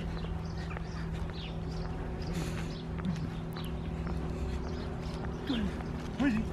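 Quiet open-field ambience: a steady low hum under faint, scattered high chirps and soft ticks.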